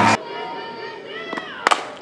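Loud crowd noise cuts off abruptly, leaving quiet ballpark ambience with faint held tones and a short gliding voice-like call. Then come two sharp knocks, the second and louder one near the end.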